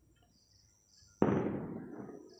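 A single sudden bang a little over a second in, dying away gradually over about a second and a half.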